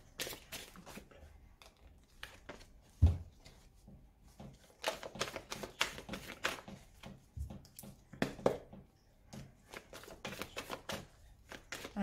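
A deck of oracle cards shuffled by hand: irregular flurries of quick card flicks and slaps, with a sharp knock of the deck about three seconds in and a softer one a few seconds later.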